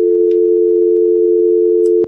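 Telephone dial tone: two steady tones sounding together at an even level. It is the sign of a telephone line into the broadcast that has dropped.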